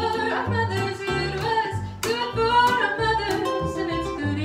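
A woman sings a hymn melody, accompanied by an acoustic guitar and a plucked upright bass. The bass notes change at a steady beat.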